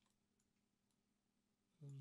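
Near silence: room tone, with a faint click from the computer's keys or mouse right at the start.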